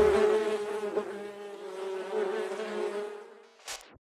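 Honeybees buzzing in a steady, slightly wavering hum that fades out, followed by a brief click near the end.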